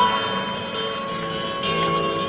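Live rock band music from a 1972 concert recording, an acoustic number with long held notes. The music softens slightly in the middle.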